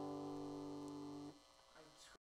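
The final guitar chord of the closing music ringing out and slowly fading, then cut off abruptly about a second and a half in, leaving near silence.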